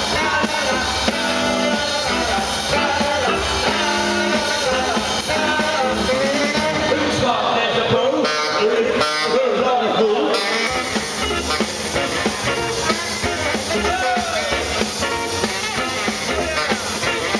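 Live rock and roll band playing: tenor saxophone leading over upright double bass and drum kit, with a singer's voice. About eight seconds in, the bass and drums drop out for roughly two seconds while the melody carries on, then the full band comes back in.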